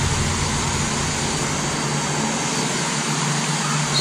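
DJI Mavic Pro's internal processor cooling fan running steadily, an even hiss with a low hum: the fan is working.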